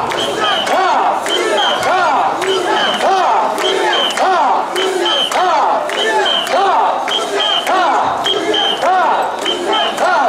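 Mikoshi carriers shouting a rhythmic chant in unison as they shoulder the portable shrine, a dense mass of voices rising and falling on each beat. Short high whistle blasts, in pairs about once a second, keep time over the chanting.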